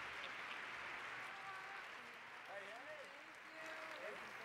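Large audience applauding, a dense, even clapping that eases off slowly, with faint voices coming through in the second half.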